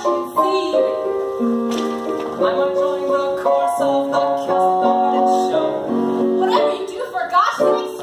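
Piano music playing a melody of held notes over chords, changing note every half second or so.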